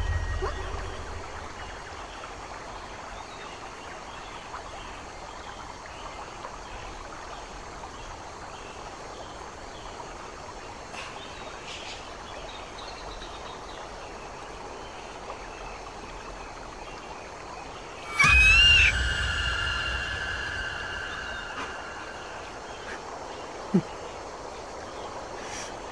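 A faint steady outdoor background, then about eighteen seconds in a sudden loud low boom with a high ringing tone that fades away over several seconds.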